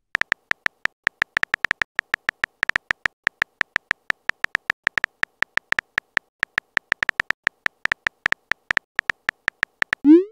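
Rapid keyboard tap sound effects from a texting-story app, one per letter as a message is typed: short, bright clicks at about seven a second, slightly uneven in spacing.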